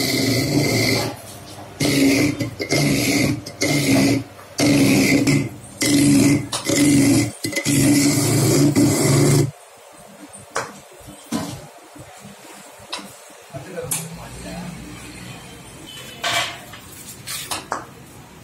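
A machine hum with hiss, starting and stopping in repeated bursts about a second long; after about nine seconds it stops, leaving scattered light clicks and taps.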